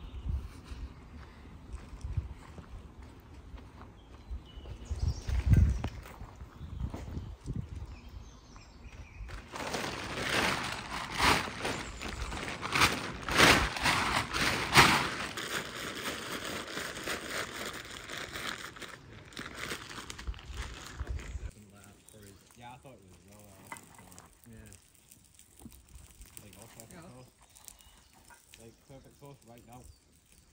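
Rustling and crinkling of nylon camping gear being stuffed into a stuff sack and packed away. The sound is densest and loudest in the middle stretch, then stops. A dull thump about five seconds in.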